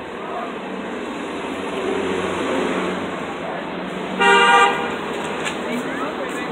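A car horn honks once, briefly, about four seconds in, over steady city street traffic noise.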